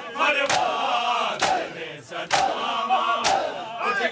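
A crowd of mourners performing matam: men striking their chests with their hands in unison, about once a second, four strikes in all. Between the strikes the massed male voices shout and chant a noha.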